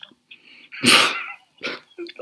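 A sudden loud burst of laughter about a second in, followed by a shorter laugh, coming through a video-call microphone.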